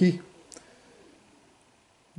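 A man's narrating voice trails off at the start, a single short click comes about half a second in, and then only faint room tone follows.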